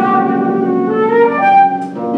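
Concert flute playing held notes over harp accompaniment, the melody stepping through several pitches, with a brief dip in loudness near the end.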